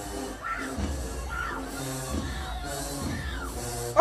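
Marching band playing in a stadium, with sustained, sliding brass notes over a pulsing low drum and bass line, and crowd noise beneath.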